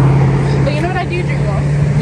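Women talking, over the steady low hum of a motor vehicle's engine on the road.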